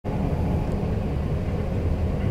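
Steady low rumble of the 285 series sleeper train running, heard from inside a passenger compartment.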